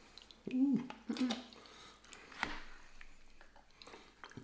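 Neck bones in gravy lifted with metal tongs from a glass serving bowl: faint wet squishing and one sharp click of the tongs about two and a half seconds in. Two brief voiced sounds come in the first second and a half.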